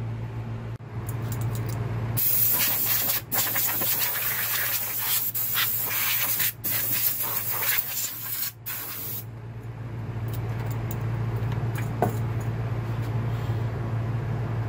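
Compressed air blowing from an air hose, a long hiss from about two seconds in to about nine seconds, broken by three brief gaps, over a steady low hum. A single sharp click sounds near the end.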